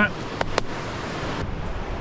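Steady rush of whitewater rapids on a river running high, with two sharp clicks about half a second in.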